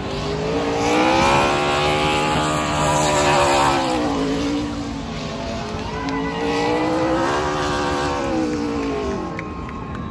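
NASCAR stock car's V8 engine revving hard during a burnout, its pitch sweeping up and back down twice, loudest in the first few seconds.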